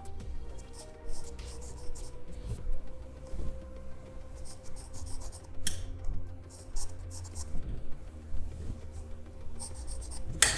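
Sharp charcoal pencil scratching on drawing paper in groups of short, quick strokes with pauses between them. A steady low hum runs underneath.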